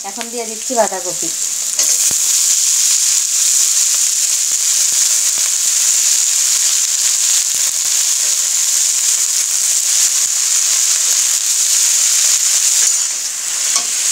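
Shredded cabbage and potatoes frying in hot oil in an aluminium kadai, a steady sizzle that gets louder about two seconds in, with a metal spatula stirring through the pan.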